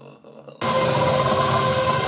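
Movie trailer soundtrack: after a quiet moment, a sudden loud cinematic hit about half a second in, carrying on as a sustained noisy rumble with a steady ringing tone.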